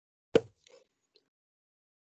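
A single sharp pop, followed by two much fainter short knocks.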